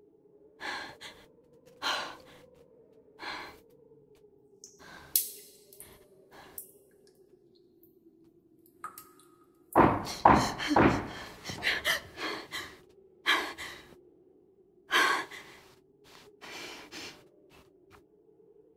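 A woman breathing in ragged gasps and sighs, one breath after another, with a louder run of gasps about ten seconds in. A faint steady low tone sounds underneath.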